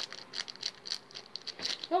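Plastic wrapper of a KitKat bar crinkling as it is handled and turned over, a run of small irregular crackles and rustles.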